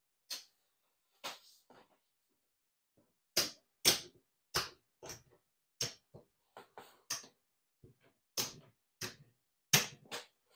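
Casino chips clicking as they are picked up, stacked and set down on a felt craps layout: a string of sharp, irregular clicks, some coming in quick pairs.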